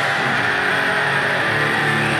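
Heavy rock music carried by electric guitar, with the deep bass notes absent.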